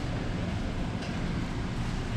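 Steady low noise of a loaded wire shopping cart being pushed along a warehouse store floor, its wheels rolling.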